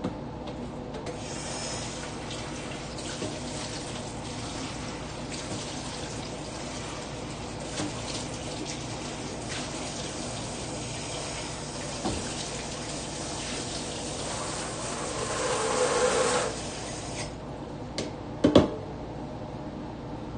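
Kitchen tap running into a sink, growing louder just before it is shut off suddenly. About a second later comes a single sharp knock.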